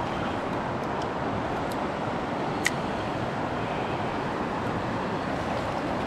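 Steady rush of flowing stream water, with a single sharp click a little under halfway through.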